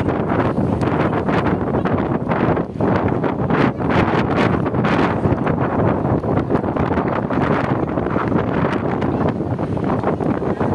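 Wind buffeting a phone microphone on the open top deck of a moving tour bus: a loud, steady rush with flickering gusts, with the bus's running noise underneath.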